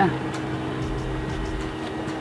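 Steady low mechanical hum, holding two even tones, with no other sound standing out.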